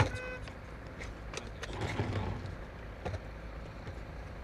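Low, steady vehicle engine rumble with a few scattered light knocks. A sharp click and a short, high beep at the very start, then the rumble swells briefly about two seconds in.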